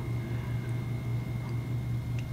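Background room noise with a steady low hum and a faint high steady tone, no distinct event.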